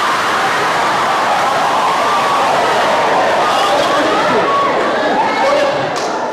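A live audience laughing together: a dense crowd noise with voices mixed through it, easing slightly near the end.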